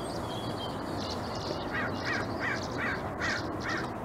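Wild birds calling: about halfway in, a run of about seven quick, evenly spaced calls, roughly three a second, over thin high chirps and a steady low background noise.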